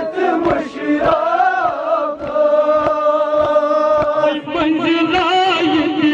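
Male voices chanting a nauha, a Shia mourning lament, in long held, wavering lines, with men beating their chests in time, about two beats a second.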